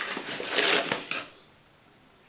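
Paper sugar bag rustling and crinkling as a hand opens its top and a tablespoon digs into the sugar inside. The crackly rustle lasts about a second and a half and stops abruptly.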